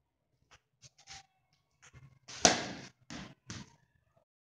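Baseball bat hitting a weighted training ball (a Precision Impact slug) off a batting tee. A few faint clicks come first. The hit is one sharp, loud knock about halfway through, followed by two shorter knocks.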